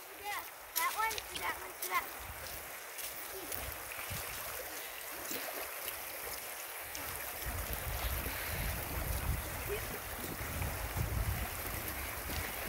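Shallow stream running over gravel, a steady rushing hiss. About seven seconds in, a low rumble joins it.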